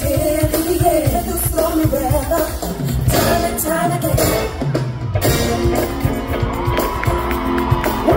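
Live R&B band playing through a concert PA, with drums, bass, guitar and keyboards and voices singing over the first few seconds. About halfway through, a low note slides down, and held keyboard chords follow over a steady beat.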